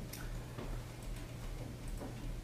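A few light, sharp clicks of a computer mouse as the SRID cell in a software dialog is clicked for editing, over a steady low room hum.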